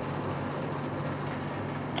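Steady low background hum of room noise, with no distinct events.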